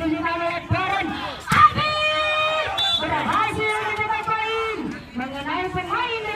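Men's voices shouting and calling among a crowd of spectators at a volleyball match, with one long held shout about two seconds in. A single sharp smack about a second and a half in, a volleyball being struck.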